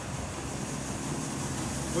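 Grain bin aeration fan running, a steady even noise with a low hum.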